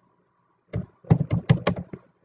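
Typing on a computer keyboard. A single keystroke comes a little under a second in, then a quick run of about five more keystrokes.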